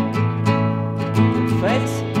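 Acoustic guitar music from a folk-pop song, with chords struck about every half second and a melodic line sliding upward in pitch near the end.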